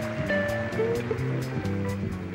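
Live jazz played by a small combo: electric guitars carry a melodic line over held chords and bass notes, while the drums' cymbals keep a steady beat.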